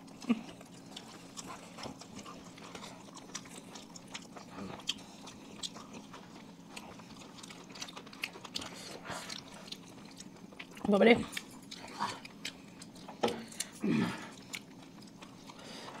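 Several people chewing and biting into pizza: soft, scattered mouth clicks and smacks, with two short murmured hums near the end.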